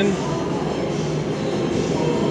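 A steady rushing noise with a low hum, unbroken and fairly loud, like a machine running in a large, bare room.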